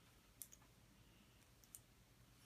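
Near silence, broken by a few faint clicks of small plastic Lego bricks being handled and pressed together.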